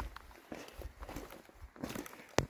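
Faint, irregular footsteps of a hiker walking on a dirt and rock forest trail.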